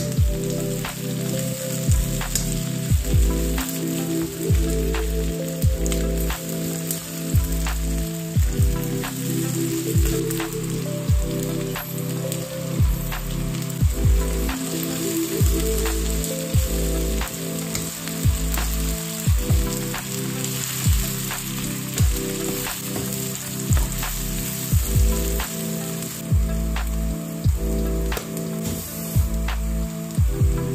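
Sliced onions frying in oil in a nonstick wok, with a steady sizzle. A wooden spatula stirs them, knocking and scraping against the pan every second or so. Background music with low bass notes runs underneath.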